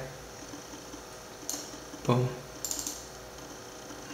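Light clicks on a laptop's keys and touchpad: a single sharp tap about a second and a half in and a brief flurry of ticks near three seconds, over a steady faint electrical hum.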